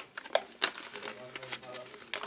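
A few soft clicks and rustles from a glass bottle being handled and turned, over a faint, steady murmured voice.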